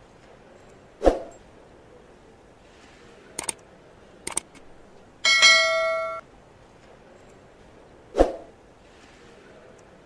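Subscribe-button animation sound effects: a thump about a second in, two quick double clicks, then a notification bell ding that rings for about a second, and a second thump near the end.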